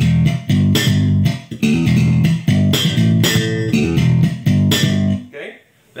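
Yamaha TRB6 JP six-string electric bass played amplified, with its tone control set back to the middle: a busy run of plucked low notes, several per second, that stops about a second before the end.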